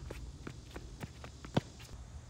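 Quick footsteps and shoe scuffs on a hard tennis court as a player runs for the ball, with one sharp, loud knock of the tennis ball about a second and a half in.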